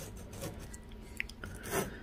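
A glazed ceramic flowerpot on its footed saucer being slid across a wooden tabletop by a gloved hand: a faint scraping rub with a small tick partway through, swelling briefly near the end.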